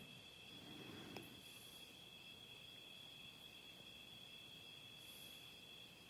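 Near silence, with a faint, steady high-pitched chirring of crickets and a soft tick about a second in.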